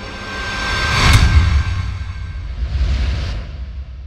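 Logo-intro sound effects: a rising swell builds to a sharp hit with a deep boom about a second in, then a low rumble and a whoosh around three seconds in that fades away.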